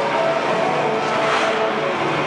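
Skateboard wheels rolling through a bowl, a steady continuous rolling noise.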